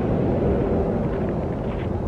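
Wind buffeting the microphone outdoors, a steady low rumble with no distinct events.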